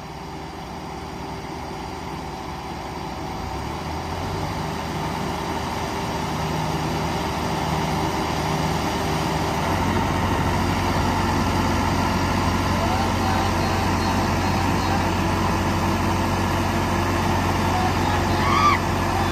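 Two diesel farm tractors, a Sonalika 750 and a New Holland 3630, revving up and working against each other in a tractor tug-of-war. The engine noise grows steadily louder, and a strong low drone sets in about ten seconds in as they bear down on the pull.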